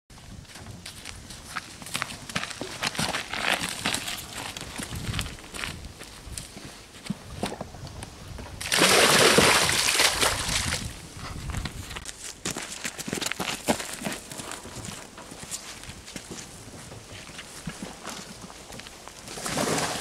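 Water with young fish tipped out of a plastic tub into a lake: a loud splashing pour lasting about two seconds near the middle, and another starting just before the end. Before it, scattered knocks and footsteps as the tubs are carried.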